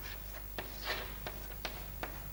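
Chalk writing on a blackboard: a few sharp taps as the chalk meets the board and short scratchy strokes, the longest and loudest about a second in.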